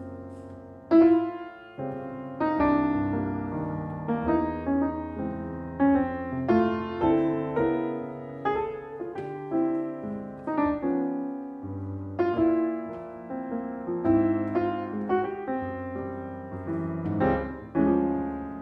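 Solo acoustic grand piano playing a slow jazz ballad: chords and melody notes struck and left to ring out, with a new chord every half second to a second.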